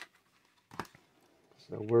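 A single short rustle of card-blister packaging being handled, a little under a second in; otherwise quiet until a man's voice starts near the end.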